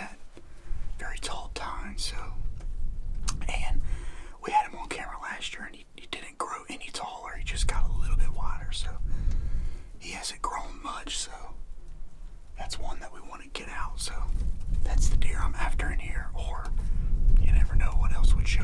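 A man whispering, with a low rumble coming and going beneath it.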